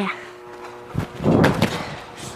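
A child jumping off a balance beam and landing on a padded gymnastics crash mat: a thud about a second in, followed by a short scuffle.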